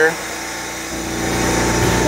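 Steady drone of a Tetra Pak Continuous Freezer 1500 running its cycle, a constant hum with several fixed tones over a noise haze, joined by a deeper rumble about a second in.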